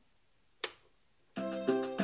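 A single sharp click, like a button press, about half a second in; then near the end a Casio MA-150 electronic keyboard starts playing a built-in song, its notes changing about three times a second, at a raised tempo.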